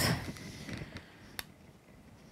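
Faint handling sounds of a long black latex 260 balloon being held and twisted, with a single sharp click about one and a half seconds in.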